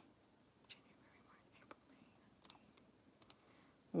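A few faint computer mouse clicks, scattered and irregular, as dropdown menus on a web page are opened and dates picked, over quiet room tone.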